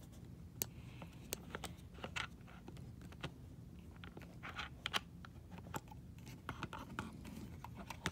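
Handling noise from a phone camera being picked up and adjusted: irregular light clicks and scrapes of fingers and fabric against the phone.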